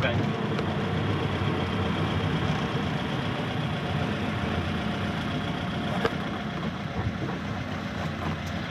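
Lada 2101's four-cylinder engine running in slow town traffic, heard from inside the cabin as a steady low hum with road noise. It gets a little quieter toward the end.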